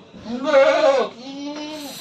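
A goat bleating: one long call, loud and arching in pitch at first, then quieter and steady for about its last second before breaking off.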